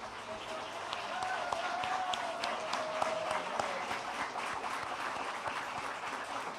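An audience applauding, the clapping building up over the first couple of seconds and then holding steady. One long wavering tone sounds above the clapping through the first half.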